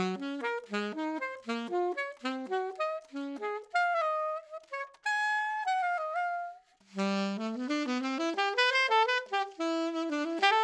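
Alto saxophone played with a SYOS Steady 3D-printed mouthpiece: a quick run of short notes, then a few longer held high notes, a brief break, and another run climbing up from the low register. The high notes come hard on this mouthpiece with a thin reed.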